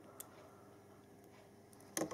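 Quiet handling of a small LiPo battery plug and the transmitter's power lead, with a faint tick a moment in and a sharp click at the very end as the connector is pushed home to power the video transmitter.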